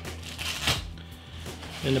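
Nylon camera backpack being handled: fabric rustling and shuffling as hands open a pocket at its base and pull out the stowed rain cover, with one brief knock about two-thirds of a second in.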